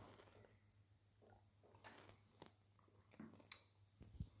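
Near silence as a person quietly sips a drink, with a few faint mouth and cup clicks; the sharpest click comes about three and a half seconds in.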